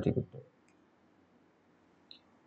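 A man's voice ends a word in the first half-second, then near silence with one faint click.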